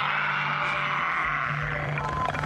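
Movie soundtrack of a velociraptor scene: music with a long, even hiss that fades near the end, over a steady low hum.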